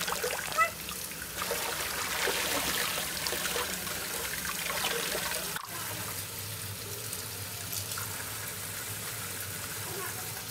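Kitchen tap running steadily, its stream splashing onto small fruits in a plastic colander in the sink. There is a brief break in the sound a little past halfway.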